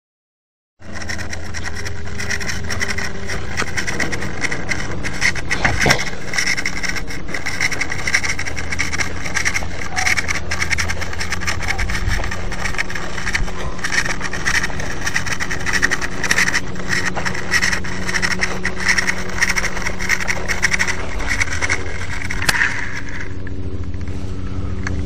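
Electric RC collective-pitch helicopter in flight, heard from a camera on its frame: a steady motor-and-rotor drone with a constant fine rattle, starting a moment in after a brief dropout. Near the end a sharp knock comes, and the higher part of the sound dies away as the helicopter crashes, leaving a low hum.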